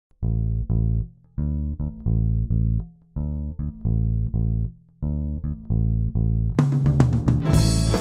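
Intro of a rock song: a low plucked-string riff played alone in four short repeated phrases with brief pauses between them. About six and a half seconds in, the full band comes in with drums and cymbals.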